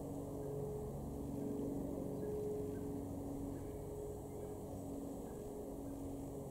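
A low motor hum with several long, steady tones at different pitches that overlap and change every second or two.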